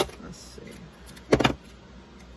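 Scissors trimming a napkin-covered paper index card: a short sharp snip right at the start, then a louder clack about a second and a half in that lasts a fraction of a second.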